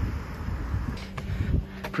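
Street ambience: a low rumble of road traffic mixed with wind on the microphone, dropping about a second and a half in to a quieter faint steady hum.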